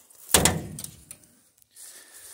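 The hood of a 1996 Geo Tracker slammed shut: one loud metal thump about a third of a second in, dying away over about half a second.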